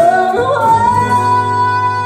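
Live pop performance with a woman singing over the band. About half a second in, her voice climbs and settles into one long held note.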